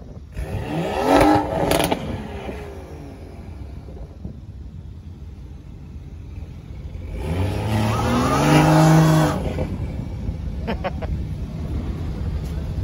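BMW 1 Series hatchback engine being revved while the car is held in traffic: a short rev about a second in, with a sharp crack from the exhaust, then a longer, louder rev held for a couple of seconds. A few faint pops follow the second rev.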